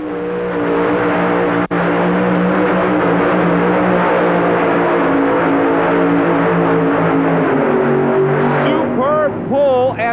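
Four-engine modified pulling tractor running flat out under load on its supercharged engines, a dense, steady, loud engine note. The note drops in pitch shortly before the end, with a momentary dropout about two seconds in.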